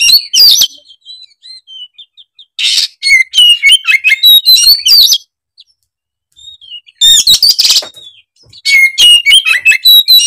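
Oriental magpie-robin (kacer) singing loud, rapid, varied phrases of whistles and chirps in bursts, with a pause of about two seconds near the middle. This is an agitated, in-form bird running through its repertoire of mimicked songs.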